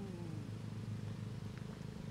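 A steady low hum runs throughout. In the first half second the falling tail of a man's drawn-out hummed "mm" fades out over it.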